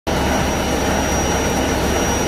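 Steady, loud mechanical drone of a tank truck's engine and pump running while fluid is transferred through a connected hose, with a thin high steady whine over it.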